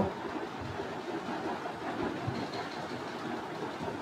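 Steady background hiss of room noise under a pause in speech, with a few faint soft thumps.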